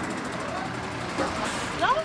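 Fire engine running close by as it pulls in, a steady engine noise, with faint voices in the background and a voice starting near the end.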